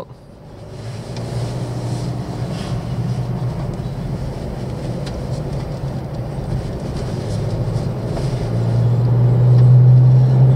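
Mercedes-Benz X-Class X250d's 2.3-litre four-cylinder diesel and tyre noise heard from inside the cab while driving on asphalt: a steady low hum that builds over the first second or so, then grows louder near the end as the truck accelerates up a hill.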